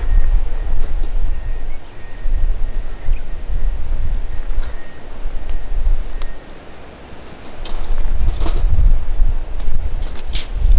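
Wind gusting across the microphone: a heavy, uneven low rumble that drops away for about a second six and a half seconds in, then picks up again.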